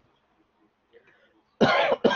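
Near silence for over a second, then a man coughs once near the end: a short, loud, noisy burst.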